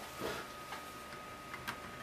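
A few faint, sparse clicks of small plastic parts being handled as a hand sets the propeller back onto the kit's toy motor, over a faint steady high tone.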